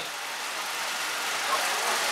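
Steady hiss-like background noise with no speech, growing slightly louder toward the end.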